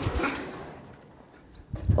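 Rustling and light knocks of a phone being handled, a finger brushing over it, dying down after about half a second; a girl's voice starts just before the end.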